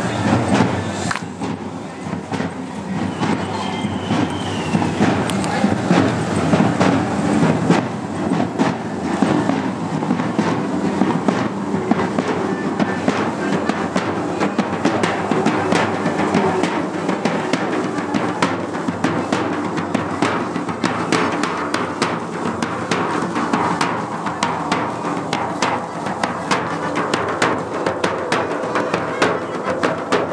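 Matachines dance drums: a snare drum and a bass drum played together in a continuous, rapid, driving beat.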